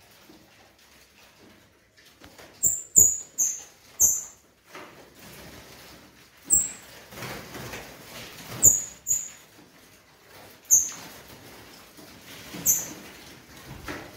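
Caged songbirds giving short, sharp, high-pitched chirps, about nine scattered irregularly through a low, steady background hum.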